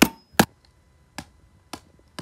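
Sharp blows striking a DVD disc lying on carpet as it is being smashed: two loud hits at the start, then two fainter ones a little over a second in.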